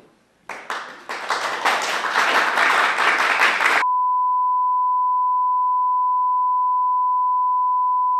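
Clapping that swells for about three seconds, then cuts off abruptly. A single steady 1 kHz line-up test tone, the kind broadcast with television colour bars, follows to the end.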